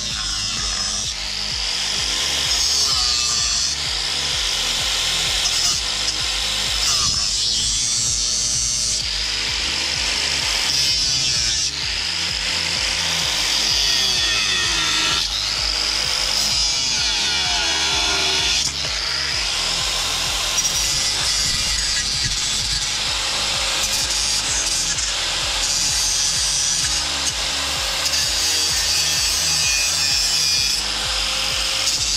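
Electric angle grinder with its disc running against a black tube, a loud steady high whine whose pitch wavers a few times as the disc is pressed into the work.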